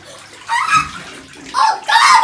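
Water and water balloons sloshing in a bathtub as a child moves in it, with two short outbursts of a child's voice, about half a second in and again near the end.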